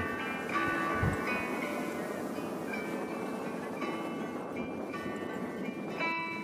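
Soft instrumental background music with long held notes over a steady rush of wind and breaking surf.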